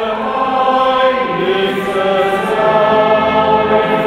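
Boys' choir singing slow, long-held notes in harmony.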